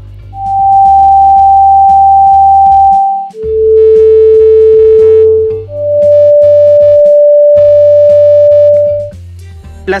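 n-Track Tuner app's tone generator sounding three pure, steady tones one after another, each about three seconds and loud. The first is G5 (783 Hz), then a lower note, then D5 (587 Hz). Soft background music with a low, regular beat runs underneath.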